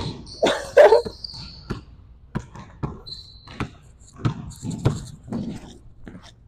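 Basketball dribbled on a hardwood gym floor: a string of about nine irregular bounces. A short laugh near the start.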